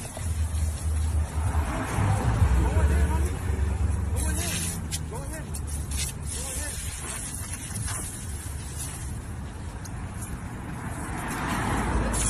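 Muffled men's voices over a steady low rumble, with a hiss of water spray from a garden hose coming and going.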